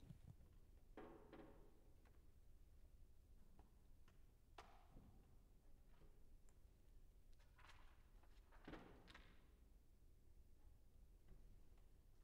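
Near silence, with a few faint knocks and rustles as sheet music is handled on a grand piano's music stand.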